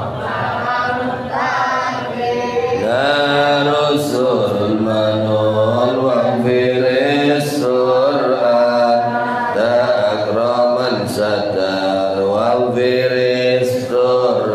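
A man's voice chanting melodically into a handheld microphone, in long held notes that glide up and down in pitch with short breaks for breath.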